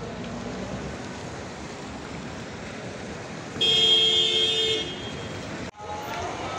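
Steady street and traffic noise on wet roads. A vehicle horn sounds once, a single held tone lasting about a second, just past the middle.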